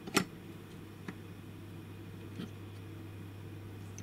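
Stanley Fatmax 97-546 ratcheting adjustable spanner being worked on a steel nut: one sharp metallic click just after the start, then two fainter ticks about one and two and a half seconds in, as the sprung jaw slips and resets for another turn. The jaw's return spring is weak.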